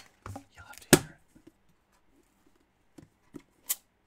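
Knocks and clatter from handling a trading-card box and its contents: a loud knock about a second in, a few smaller ones around it, then three lighter taps near the end.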